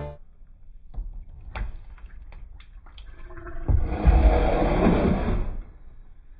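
A few light clicks as the oil drain plug is worked free by hand, then, about four seconds in, hot engine oil from a Ford 3.5 EcoBoost gushes out of the oil pan drain hole and splashes into a catch pan for about two seconds.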